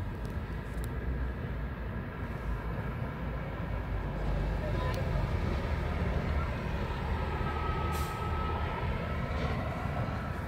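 A steady low rumble of background noise, with a faint high whine coming in over the last couple of seconds and a few faint clicks.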